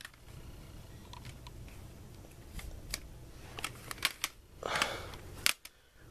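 Plastic CD jewel cases clicking and clattering as they are handled, a string of light clicks from about halfway through with a sharper click near the end.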